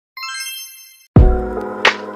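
Intro sound effects: a sparkly chime of many high bell-like tones fades out over about a second. Then a sudden loud bass hit opens music with a held chord and a sharp clap-like beat.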